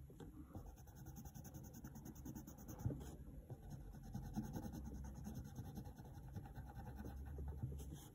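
Pencil scratching on paper, faint, in quick back-and-forth strokes as a drawn eye is shaded in, with one sharper tap a little before three seconds in.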